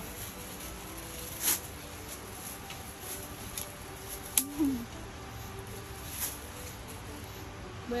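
A black plastic bag crinkling and a few sharp snaps as star fruit (carambola) are pulled from the branches by hand: a crackle about a second and a half in and a sharp snap about four seconds in.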